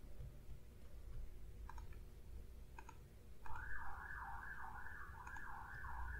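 Two light computer-mouse clicks about a second apart, then a pulsing mid-pitched sound of about two beats a second that lasts about three seconds.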